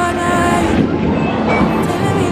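Bowling ball rolling down the lane, a steady rumble, with background music under it.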